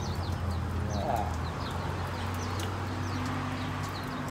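Birds chirping in quick, short, high notes, over a steady low hum.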